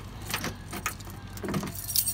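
A few scattered light clicks and knocks, with a softer thump about one and a half seconds in.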